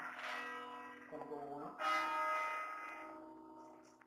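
A bell struck twice, about two seconds apart, each stroke ringing on and slowly fading.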